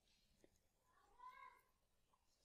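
Near silence, with one faint pitched animal call about a second in that rises and falls over about half a second.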